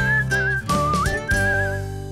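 Short TV ident jingle: a whistled melody with vibrato over instrumental backing and a few percussive hits, the whistle sliding up about a second in. The music begins to fade near the end.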